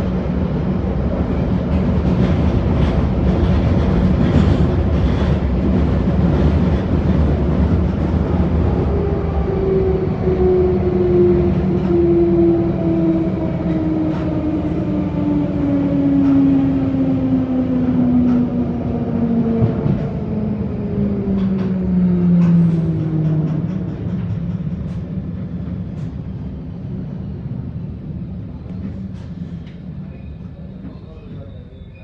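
Interior of a London Underground 1972-stock Bakerloo line train on the move: a steady rumble and rattle of wheels on rail. From about a third of the way in, a whine falls steadily in pitch as the train brakes, and the noise fades as it slows to a stop at a station.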